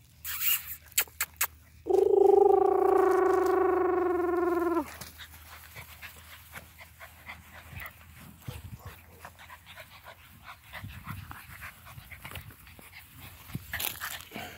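A bully-breed puppy gives one long, high whine lasting about three seconds. It holds steady in pitch and drops at the end, and a few sharp clicks come just before it. Faint rustling and patter in the grass follow.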